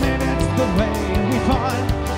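A Celtic punk band playing live: drums with an even beat of cymbal hits under guitars and a gliding melody line.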